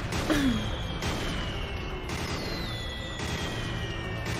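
Cartoon battle sound effects from the anime soundtrack: a continuous low rumble of cannon fire and explosions, with long, slowly falling whistling tones over it.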